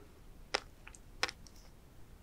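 Sea grapes and flying fish roe popping between the teeth as they are chewed: a few sharp, crisp pops, the loudest about half a second in and just past a second, with fainter ones between.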